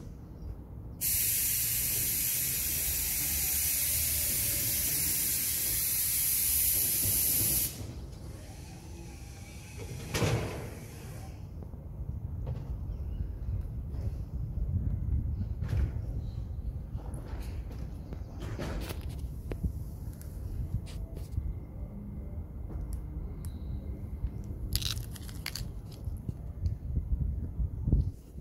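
A loud, steady hiss starts suddenly about a second in and cuts off sharply some six and a half seconds later. After it, a low rumble runs on with a short knock a few seconds later and a few faint clicks near the end.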